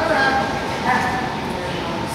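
A dog yipping twice in short, high cries, the second about a second after the first.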